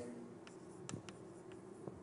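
Faint writing on a board during a lecture: a few scattered light taps and scratches as the lecturer writes.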